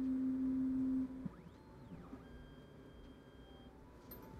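The newly replaced Z-axis stepper motor of an Anycubic Photon M3 Max hums on one steady tone as it homes the build plate down onto the leveling paper. It stops suddenly about a second in, when the plate reaches the bottom.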